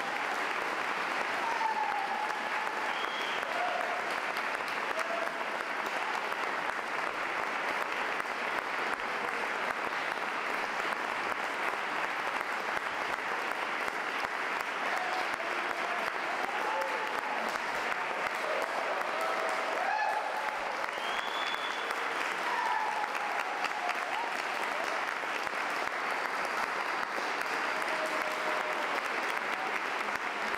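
Sustained audience applause after a live song, steady throughout, with scattered cheers rising above it.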